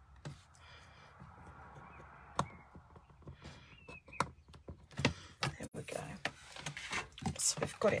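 Card stock, a ruler and a mechanical pencil being handled on a paper trimmer while a measurement is marked: faint scraping and rustling, a sharp click about two and a half seconds in, and a run of small taps and clicks near the end as the paper is shifted into place.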